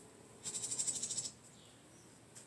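An insect trilling: a high, buzzy run of rapid, even pulses lasting just under a second, starting about half a second in, over a faint steady high hum of more insects.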